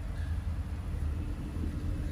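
Car heard from inside the cabin: a steady low engine and road rumble with a faint even hum, as the car moves slowly to turn around.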